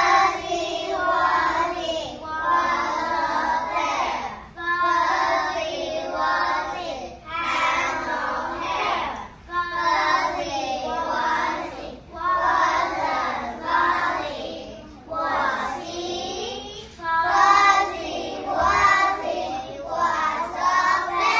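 A group of young children singing a song together in unison, in short phrases of about two seconds with brief breaks between them.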